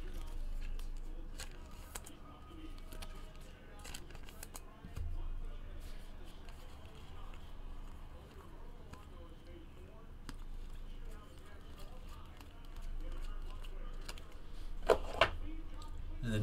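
Topps Chrome baseball cards handled and flipped through a stack: faint scattered clicks and flicks of card against card, with a louder pair near the end, over a low steady hum.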